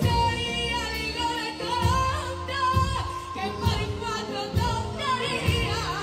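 Women singing together into microphones over amplified guitar accompaniment, with a steady pulse about once a second.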